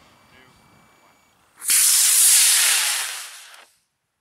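Aerotech E-20-4 composite model rocket motor igniting with a sudden loud hiss about a second and a half in, burning steadily for about a second and then fading before it cuts off abruptly.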